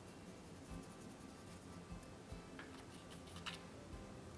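Faint light ticks and small handling noises from a paintbrush working on a wafer paper stem, with a short cluster of them about three seconds in, over quiet room tone.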